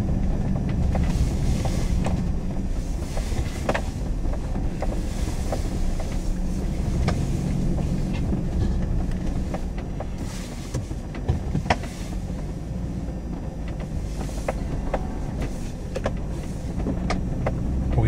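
Pickup truck driving slowly, its engine running with a low steady hum, with scattered knocks and rattles as it moves onto a dirt track.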